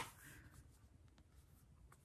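Near silence: quiet room tone with faint handling of a cardboard eyeshadow palette. There is one sharp click at the very start, a brief soft rustle just after it, and a few faint taps later on.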